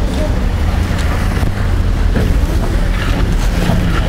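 Wind buffeting the microphone, a loud, steady low rumble, with a faint steady low hum underneath.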